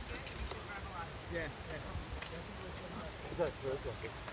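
People talking at a distance, with a laugh near the end and a few sharp clacks scattered through.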